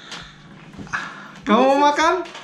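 A short drawn-out vocal sound, pitched and held for about half a second, starting about one and a half seconds in after a quieter stretch.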